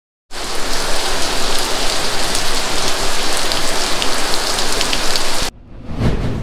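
Steady rain falling, loud and even, with many sharp drop ticks through it. It cuts off suddenly about half a second before the end.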